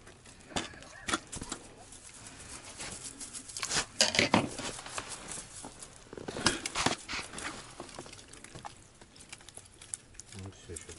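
Irregular light taps and knocks, loudest around four seconds in and again around six and a half, as a freshly caught navaga (saffron cod) flaps on the snow-covered ice and is picked up and handled over a plastic bucket.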